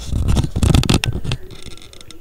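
Handling noise: a loud rustling scrape for about a second, then a few light clicks.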